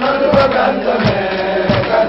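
A group of voices chanting an Islamic devotional chant for the Mawlid, sung in unison over regular beats about two or three times a second.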